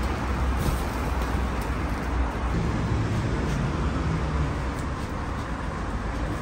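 Steady low rumble and hiss of road traffic, with a few faint light clicks.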